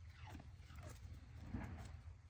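Shiba Inu making three short whining vocalizations that fall in pitch, the last and loudest near the end.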